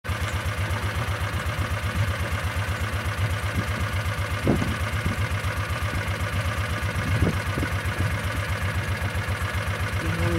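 A vehicle's engine idling with a steady, rapid low throb, joined by two brief soft knocks, one about halfway through and one later.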